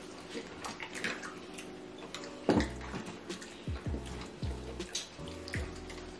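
Wet chewing and lip-smacking of people eating barbecue ribs, many short clicks, over background music whose deep bass beat comes in about two and a half seconds in.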